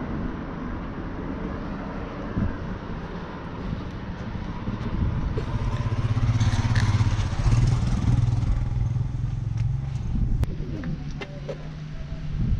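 A motorcycle passes on the road, its engine getting louder to a peak about six to eight seconds in and then fading away.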